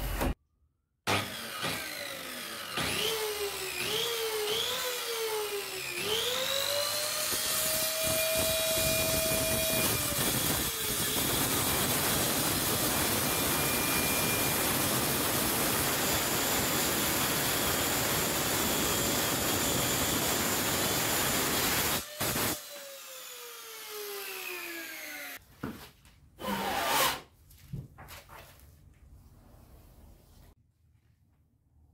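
Handheld circular saw revving in a few short bursts, then spinning up to a steady whine and cutting through a thick solid-wood slab with a long, dense rasp. The cut stops suddenly and the blade winds down with a falling whine, followed by a few brief handling knocks.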